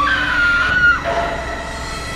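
A woman's scream, one held high note lasting about a second and falling slightly in pitch before it cuts off.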